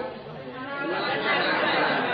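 Only speech: a man's voice, talking low and indistinctly, under a faint steady hiss.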